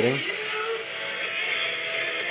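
FM broadcast station audio played through the monitor speaker of a Motorola communications system analyzer. It sounds thin and hissy, with its energy crowded into the upper-middle range. The analyzer reads about 97 kHz deviation, and the station is described as massively overmodulating.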